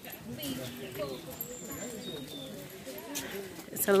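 Background chatter of a group of people talking as they walk, with a close voice starting at the very end.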